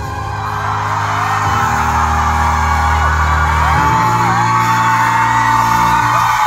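Live band instrumental break in a pop-rock song: sustained chords that change about a second and a half in and again near four seconds, with the audience cheering and screaming over the music.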